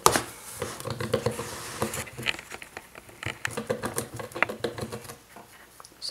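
A quick scrape of a paper pad against cardboard at the start, then irregular small clicks and scratches of a rabbit gnawing at the edge of a cardboard box.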